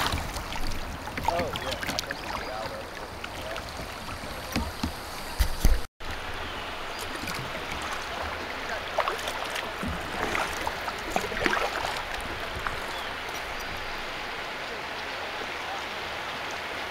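River water rushing and splashing around a kayak in shoals, with short paddle splashes. Wind rumbles on the microphone in the first six seconds; the sound drops out briefly near six seconds where the recording cuts, and the water noise is steadier after.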